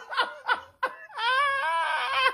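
A woman laughing in quick, rhythmic bursts that trail off, then a long drawn-out vocal cry starting about a second in.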